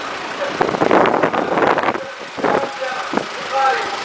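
Vehicles driving slowly past at close range on a street, engine and tyre noise swelling about half a second in and easing after two seconds.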